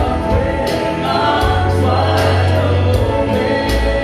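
Live worship band playing a song with electric guitar, bass, keyboard and a steady drum beat, with voices singing along.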